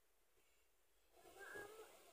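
A domestic cat meowing once, faintly, starting a little over a second in and lasting just under a second.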